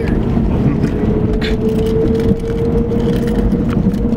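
Road and engine noise inside the cabin of a moving car: a steady low rumble with a thin tone that rises slightly, and a few light clicks.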